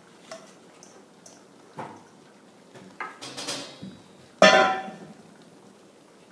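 Metal cookware handled: a few light knocks and a scraping clatter, then a loud ringing clang of a stainless steel bowl against metal about four and a half seconds in, fading over about a second.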